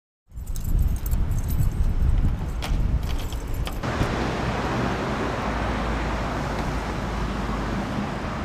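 Outdoor road traffic noise with a low rumble. For the first few seconds the rumble is heavier and uneven, with scattered light clicks and jingles. About four seconds in it changes abruptly to a steady, even traffic hiss.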